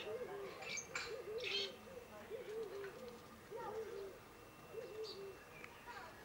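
A dove cooing in a steady series of short, low two-part notes, about one every two-thirds of a second, stopping shortly before the end. Higher chirps from other birds come in about a second in.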